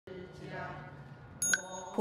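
A group of voices chanting in unison on steady notes. About three-quarters of the way in, a small handheld Buddhist bowl bell (yinqing) is struck and rings high and clear, with a second light ping just after.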